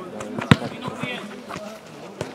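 A football kicked on artificial turf: one sharp thud about half a second in, with a few softer ball touches after it.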